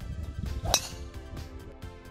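Background music with a steady beat; about three-quarters of a second in, a single sharp crack of a golf club striking a teed ball, the loudest sound.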